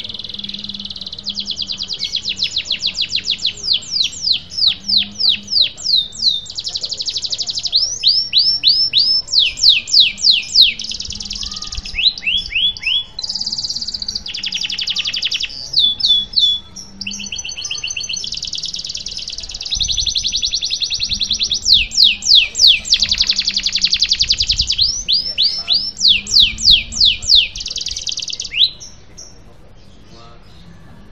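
Domestic canary singing a long rolling song: runs of fast, repeated downward-sweeping notes alternating with buzzy rolls, phrase after phrase, until it stops shortly before the end.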